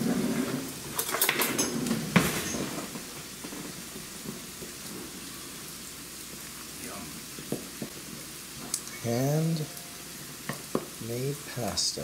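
A fork stirring egg into flour in a stainless steel mixing bowl while mixing spaetzle batter: metal scraping and clinking against the bowl, busiest in the first few seconds with a sharp clink about two seconds in, then softer.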